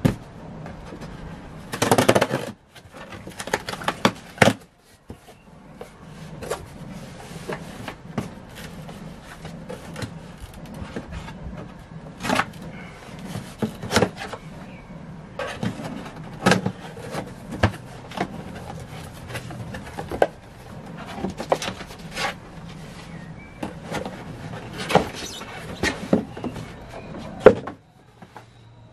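A cardboard shipping box being opened by hand: packing tape cut and peeled, flaps pulled open, with irregular scrapes, rustles and knocks of cardboard and a louder scraping burst about two seconds in. Near the end, a cardboard shoebox is lifted out of it.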